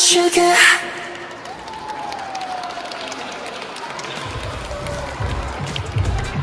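A pop dance track cuts off about a second in, followed by an audience cheering and clapping. A low rumble comes in near the end.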